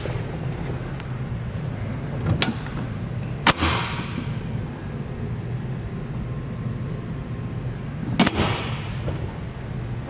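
Storage-compartment lid in a boat's fiberglass hard T-top being handled: a latch clicks, then the lid opens with a sharp bang that rings off about three and a half seconds in, and it shuts with a second bang and ringing tail about eight seconds in, over a steady low hum.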